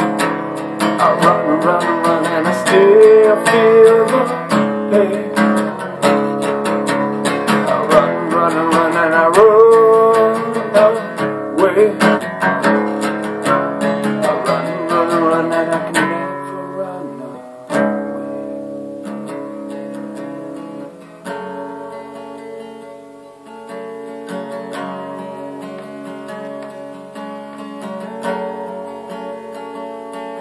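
Acoustic guitar strummed, with a man's voice singing over it through the first half. About halfway through the voice drops out and the guitar plays on more quietly, letting chords ring.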